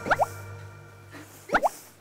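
Two short, rising cartoon 'bloop' sound effects about a second and a half apart, over background music that fades away.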